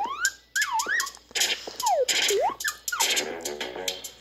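Playful electronic sound-effect music with swooping tones that slide up and down in pitch several times, broken by short hissy bursts, heard through a tablet's speaker.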